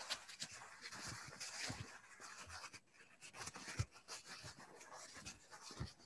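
Faint, irregular rustling and scratching of a crumpled paper tissue being handled and rubbed over pastel on paper to blend it, with small soft ticks scattered through.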